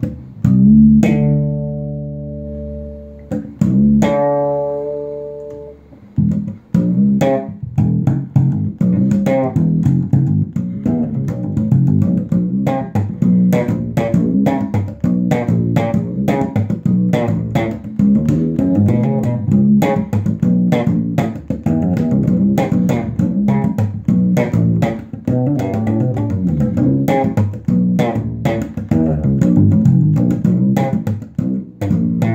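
Fretless SX Ursa 3 PJ electric bass played slap style through an amp. Two ringing notes come near the start, then from about six seconds in a fast, busy run of slapped and popped notes, several a second.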